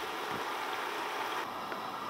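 Karhi simmering in an aluminium stockpot on a gas hob: a steady bubbling hiss with no distinct knocks.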